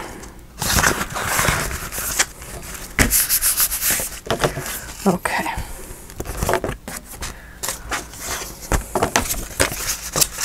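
Sheets and scraps of paper rustling and crinkling as they are handled and moved about on a cutting mat, in an irregular run of rustles and light taps.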